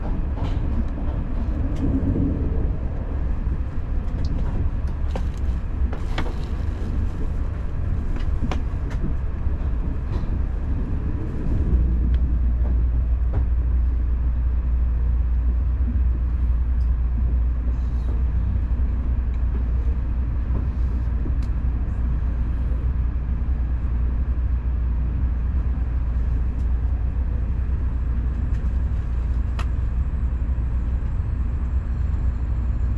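Shinkansen bullet train heard from inside the passenger car: a steady low rumble of the train running on the track, with scattered light clicks in the first ten seconds. About twelve seconds in, the deep rumble steps up louder and stays there.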